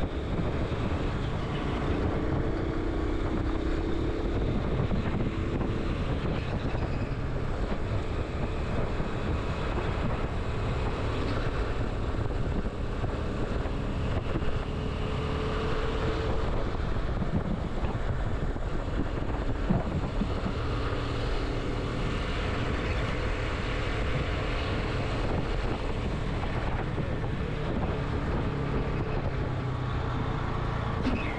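Commuter motorcycle engine running at road speed, with the rush of wind over the camera microphone. The engine note drifts up and down a little as the bike speeds up and eases off.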